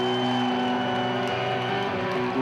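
Sustained overdriven electric guitar chord from a live hard-rock band, ringing out steadily. A thin high tone is held above it and stops near the end.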